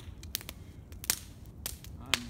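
Wood campfire crackling, with sharp irregular pops, about five in two seconds, the loudest about a second in.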